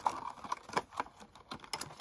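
Clear plastic box of washi tape rolls being handled: a quick, irregular run of crackly plastic clicks and taps.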